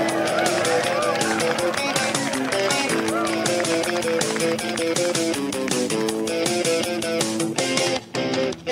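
A TV sitcom's pop theme song: guitar and bass over a steady drum beat, with a voice singing short phrases over it.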